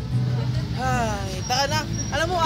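A steady low hum of street traffic, with a person's voice coming in about a second in.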